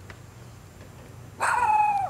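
A schnauzer-type dog gives one long, high whining howl starting about a second and a half in, dropping in pitch and then holding steady.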